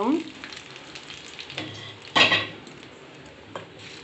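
Hot tempering oil with mustard seeds and curry leaves sizzling on freshly ground tomato chutney in a steel bowl, with a brief louder burst about two seconds in. Near the end a wooden spoon starts stirring it in.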